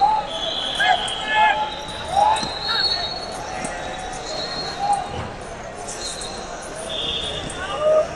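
Wrestling hall ambience: scattered shouting voices from around the hall, with short high squeaks and soft thuds from wrestling shoes on the mats.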